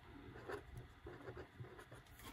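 Faint scratching of a Paper Mate pen writing numbers on paper, in short strokes.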